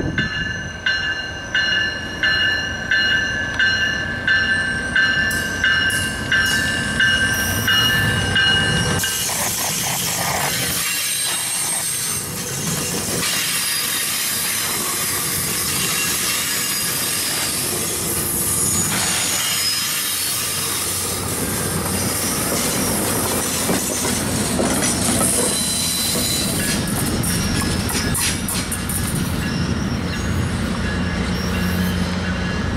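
A repeated ringing, about one and a half strokes a second, for the first nine seconds as the Tri-Rail train pulls out. Then the bi-level passenger cars roll past at low speed, their wheels running on the rails with some squeal and clatter. The pushing BL36PH diesel locomotive's rumble comes closer near the end.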